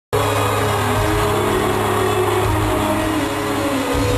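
Live rock band playing held chords in an arena, heard through a distant camcorder microphone with crowd noise underneath.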